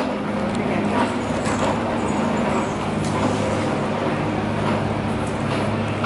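City street traffic noise with a steady low engine hum.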